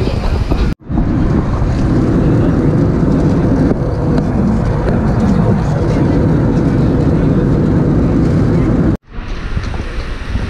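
Jet airliner cabin noise in flight: a loud, steady rumble of engines and airflow with a faint steady hum. It starts abruptly about a second in and cuts off about a second before the end.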